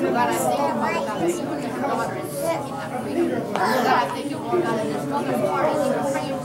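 Several people's voices speaking aloud at once, overlapping continuously so that no single voice stands out.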